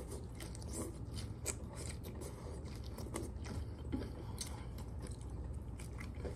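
Close-miked biting and chewing of a crisp tostada topped with shrimp aguachile, with irregular crunches throughout.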